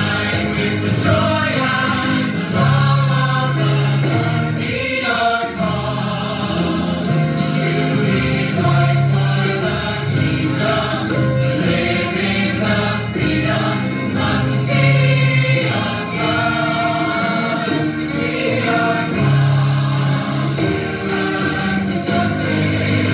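Choir singing a sacred choral piece in long held notes.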